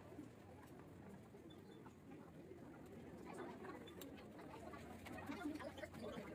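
Faint murmur of distant voices over the low room tone of a large hall, rising slightly in the second half, with a few soft clicks.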